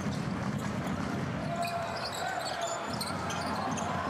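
Arena sound of a basketball game in play: a steady crowd murmur with a basketball being dribbled and scattered short squeaks of sneakers on the court.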